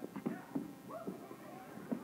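Faint voices of a church congregation calling out in response, with a few short knocks.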